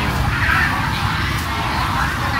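Busy produce-market background: a steady low rumble with faint distant chatter.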